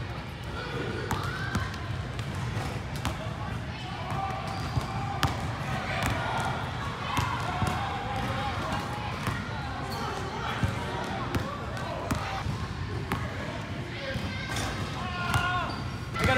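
Basketballs bouncing on a hardwood gym floor: scattered single thuds at irregular intervals. Voices chatter in the background, with the echo of a large gymnasium.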